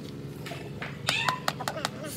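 About a second in, a quick run of about five sharp taps, a hammer knocking on a PVC pipe fitting to seat it, with a short high cry among them.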